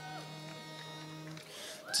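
Steady held musical notes at a few pitches, the starting pitches sounded just before an a cappella group begins singing; the lowest note stops about one and a half seconds in.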